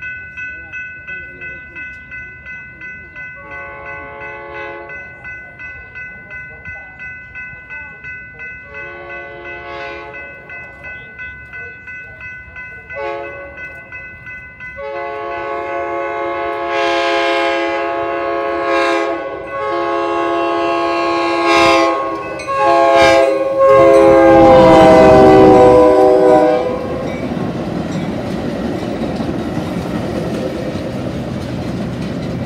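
Grade-crossing warning bell ringing steadily while an approaching Metra commuter train sounds its horn in the crossing pattern: long, long, short, then a final long blast held and growing loud as the locomotive reaches the crossing. After the horn stops, the double-deck stainless-steel passenger cars rumble past.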